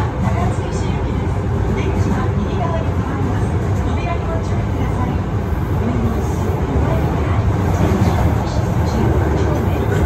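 Commuter train running, heard from inside the passenger car: a steady, loud rumble of wheels and motors with no break, and faint voices over it.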